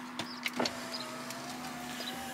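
A small electric motor in the parked car, most likely a power window closing after the drive-up handoff, gives a faint steady whine that rises slightly in pitch. It starts about half a second in, after a couple of short clicks, over the car's steady low hum.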